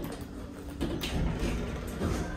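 Passenger lift's sliding doors starting to close: a low steady hum, then a short cluster of clicks and a knock about a second in as the door mechanism engages.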